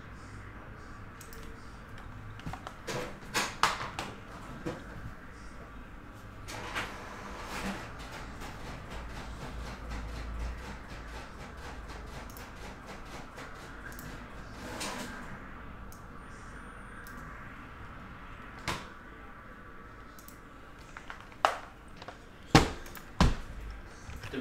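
Scattered clicks and knocks of objects being handled on a desk over low room tone, with the sharpest knocks near the end.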